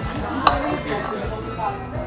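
Knife and fork clinking on a plate while cutting into a burger, one sharp clink about half a second in and a few fainter ones, over steady background music.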